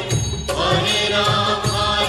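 Bengali film song: chanted, mantra-like singing over a steady beat.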